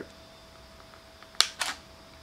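Canon 80D DSLR giving two sharp mechanical clicks about a second and a half in, a fifth of a second apart, as it is switched from movie to photo shooting and live view shuts off.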